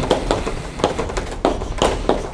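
Chalk writing on a blackboard: an irregular run of sharp taps and short scratches as letters and symbols are written.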